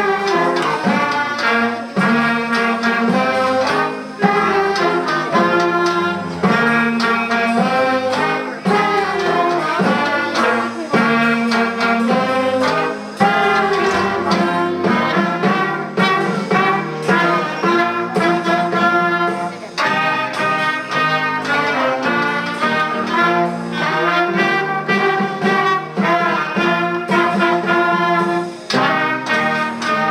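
A young students' school band of clarinets, saxophones and brass playing a piece together, a steady run of notes without a pause.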